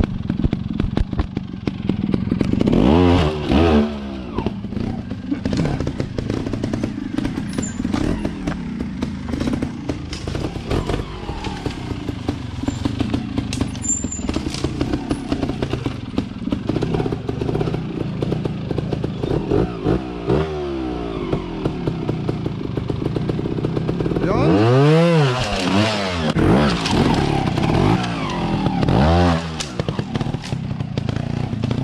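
Beta trials motorcycle engine ticking over at low revs as the bike climbs over boulders, blipped into short sharp revs several times. The biggest burst of throttle comes near the end.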